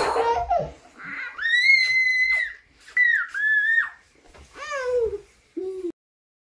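A toddler's high-pitched squealing laughter: two long squeals, then a shorter falling one and a brief final squeal. The sound cuts off suddenly just before the end.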